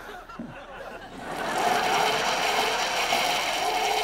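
Sitcom studio audience laughter, swelling loud about a second in and holding steady.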